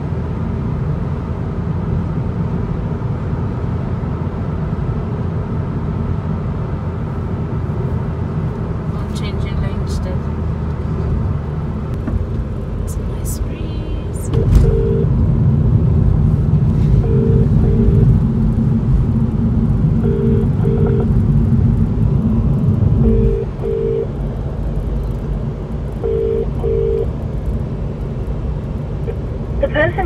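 Steady road and engine rumble inside a moving car's cabin, growing louder for about nine seconds midway. From the middle on, a short electronic double beep repeats about every three seconds.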